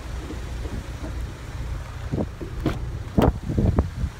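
Low wind rumble on the microphone, then a run of clicks and knocks in the second half as a car door is opened.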